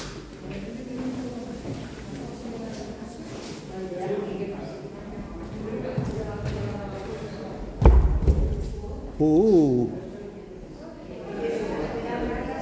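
Indistinct voices of other people echoing in a stone stairwell, with one sharp thump about eight seconds in and a short voiced call that rises and falls just after it.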